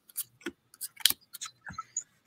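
Playing cards being dealt by hand into two stacks on a table: a string of light, irregular clicks and snaps, about seven in two seconds.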